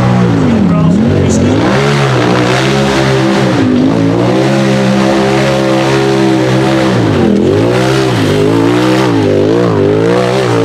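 Tube-frame rock buggy's engine revved hard and held at high revs as it climbs a steep hill, dropping off briefly twice, then blipped up and down several times in quick succession near the end.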